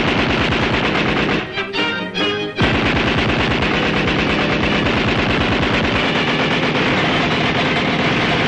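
Rapid machine-gun rattle, an early sound-cartoon effect, over orchestral music. It breaks off for about a second around a second and a half in, then resumes and carries on steadily.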